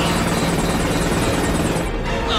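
Military helicopter in flight, its rotor and engine making a steady drone with a rapid, even beating of the blades, which stops abruptly just before the end.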